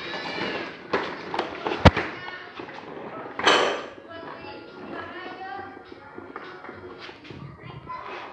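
Electronic music from a plastic baby walker's toy panel, with voices over it. There is a sharp knock about two seconds in and a short noisy burst at about three and a half seconds.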